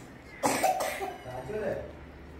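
A person coughs sharply about half a second in, then voice continues, ending in a short laugh.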